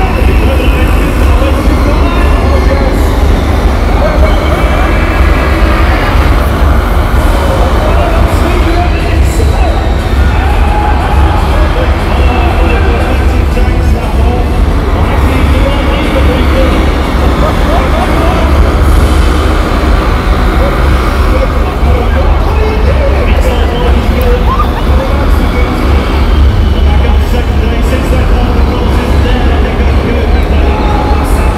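Loud, constant arena din with a heavy low rumble: music and a voice over the public-address system, mixed with the noise of small vehicles racing around the arena floor.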